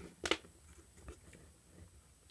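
Faint handling noise from a circuit board being moved in its plastic enclosure: a short crackle about a quarter second in, then a few small clicks.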